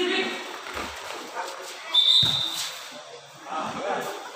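Volleyball rally with shouting from players and onlookers. About two seconds in comes a short shrill high tone and then a hard thud of the ball, the loudest moment.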